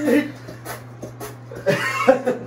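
Young men laughing in short vocal bursts, one near the start and another rising towards the end, over a steady low hum.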